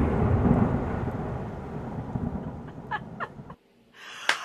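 Rumbling thunder with a hiss of rain, fading steadily and cutting off shortly before the end.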